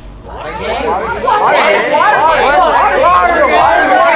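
A group of people all talking and exclaiming at once, an excited babble of overlapping voices that builds up over the first second and stays loud.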